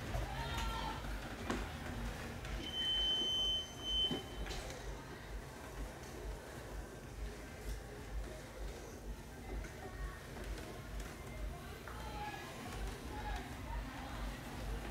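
A single steady, high-pitched electronic beep lasting about a second and a half, a few seconds in, over low room hum and faint voices.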